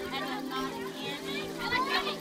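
A group of young children talking and calling out over one another.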